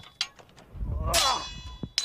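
One metallic clang of a sword blow on steel armour about a second in, ringing on in several steady tones for most of a second. A low rush builds just before the strike, and a faint knock sits near the start.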